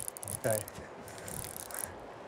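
Fly reel's drag buzzing as a running Atlantic salmon pulls line off the spool; the buzz fades out near the end.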